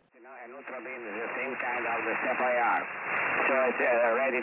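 A voice received over single-sideband shortwave radio on the 20-metre amateur band, the audio cut off sharply above about 3 kHz by the receiver's narrow passband. It fades in from silence over the first second.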